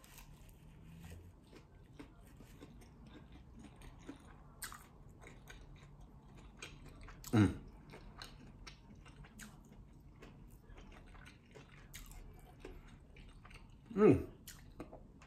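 Close-up chewing of a sauced boneless chicken wing: faint, irregular wet mouth clicks and smacks. A short voiced sound, like a brief 'mm', comes about halfway through.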